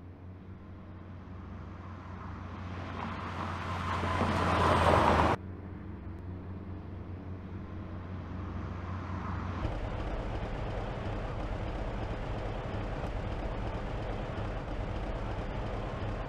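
Truck engine running as it drives by, growing louder to a peak about five seconds in and cutting off abruptly, then a steady engine drone that turns lower and fuller near the ten-second mark.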